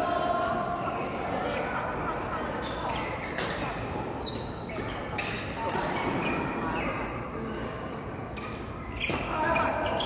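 Badminton rackets hitting a shuttlecock in a doubles rally: repeated sharp hits at irregular spacing, echoing in a large hall.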